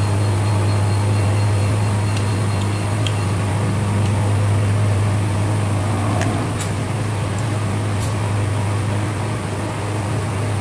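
Steady low electrical hum with a constant hiss, as from a fan motor, unchanging throughout, with a few faint clicks in the second half while food is eaten by hand.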